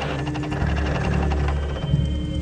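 Dark electronic soundtrack drone with a burst of crackling digital static that cuts off about one and a half seconds in, followed by a steady high electronic tone.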